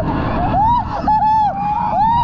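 A rider screaming in a string of short, high-pitched wails, each rising and falling, over a steady rush of wind and ride rumble on a roller coaster drop.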